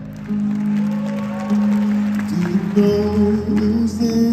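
Live band playing a slow passage with held keyboard and guitar chords that shift pitch a little past halfway, with some clapping from the crowd.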